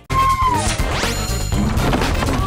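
Opening theme music of a TV variety show with cartoon sound effects: a sudden hit right at the start, a falling tone, then a quick rising sweep about a second in.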